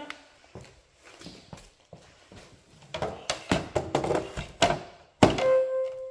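Back-support section of a Raizer lifting chair being handled and fitted to its motor unit, with knocks and rattles, then snapping into place with a loud click about five seconds in. The motor unit answers at once with a short steady electronic tone, its signal that the part is properly locked in.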